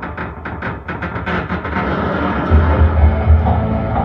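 Live acoustic music without vocals: a double bass plays low notes, more strongly in the second half, after a fast run of percussive taps in the first two seconds.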